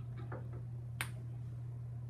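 A single sharp click about halfway through, over a steady low hum.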